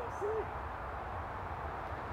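A short hooting note a fraction of a second in, a single pure tone that rises and falls, over steady outdoor background noise.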